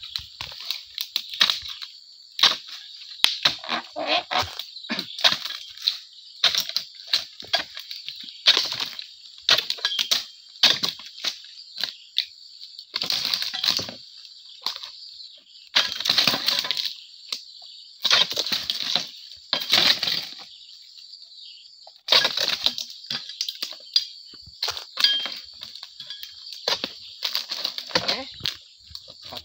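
Dry oil palm fronds rustling and crunching with repeated scraping chops as a pole-mounted palm chisel (dodos) is pushed into frond bases and dragged through cut fronds, in irregular bursts. A steady high insect buzz runs underneath.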